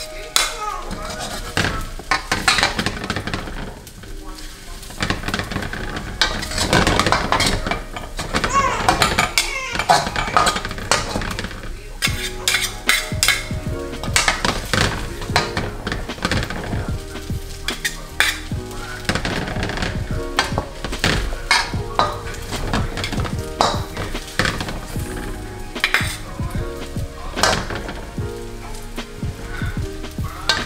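Noodles sizzling in a hot wok while two metal ladles toss them, scraping and clinking against the pan many times throughout.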